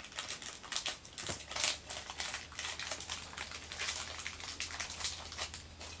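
Thin plastic packaging crinkling as it is handled and opened, in a dense, irregular run of crackles.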